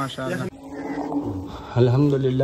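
A man speaking, broken off by a cut about half a second in; a low, steady, humming tone follows for about a second before a man's voice speaks again near the end.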